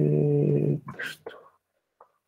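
Speech: a voice holding one long, even syllable for about a second, then a short word, falling silent about a second and a half in.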